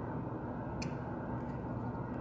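Quiet room tone with a faint steady hum and one soft click a little under a second in.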